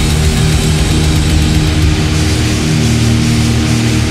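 Live heavy metal played loud: distorted electric guitars, bass guitar and drums in a dense, steady wall of sound, with cymbals coming up more brightly in the second half.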